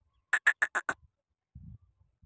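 Male black francolin calling: a quick run of five short notes lasting about half a second.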